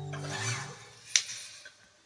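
The final acoustic guitar chord dies out within the first half second, with a brief scraping rustle as it stops. A single sharp click follows just over a second in, then the sound falls away toward near silence.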